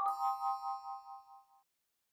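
Electronic chime sound effect: a chord of three notes that rings with a wavering pulse and fades out by about a second and a half in.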